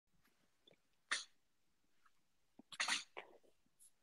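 Near silence broken by two short breathy noises from a person, one about a second in and a longer one near three seconds in.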